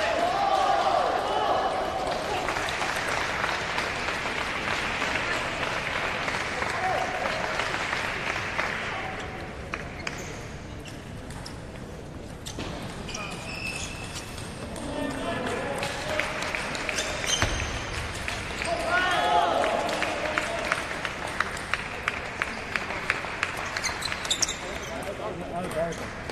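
Table tennis balls clicking on tables and bats, a steady scatter of sharp ticks that gets denser in the second half, heard in a reverberant hall. Voices and shouts come in at the start and again about two thirds of the way through.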